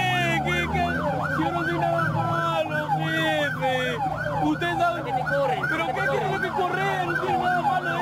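Several emergency vehicle sirens, overlapping, each sweeping quickly up and down in a fast yelp several times a second.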